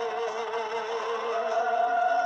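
A man singing a Hindi film song over backing music, drawing out one long note that steps up in pitch about two-thirds of the way through.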